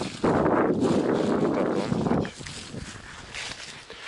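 A man's long, rough, tired sigh lasting about two seconds, then quieter breathing.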